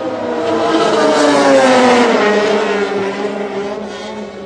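A MotoGP racing motorcycle passes at speed on the track. Its engine note grows louder and rises to a peak in the middle, then drops in pitch and fades as it goes by.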